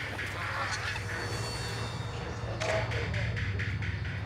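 A flock of geese honking as they fly overhead, with a steady low hum beneath.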